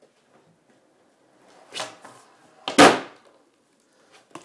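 Longboard wheels rolling faintly across a hard floor, a smaller knock just before two seconds in, then a loud sharp clack near three seconds in as the board hits the floor during a hop trick.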